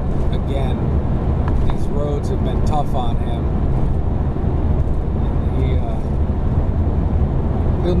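Steady road and engine noise heard from inside a vehicle cruising at highway speed, a constant low rumble, with a few faint voice-like sounds and light clicks mixed in.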